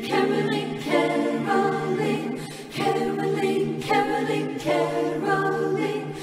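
Mixed SATB choir singing unaccompanied in close harmony, a series of sustained chords with a new attack about every second.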